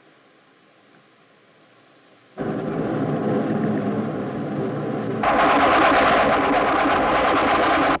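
A loud rushing roar comes in suddenly a little over two seconds in. It swells louder and brighter about five seconds in, then cuts off abruptly.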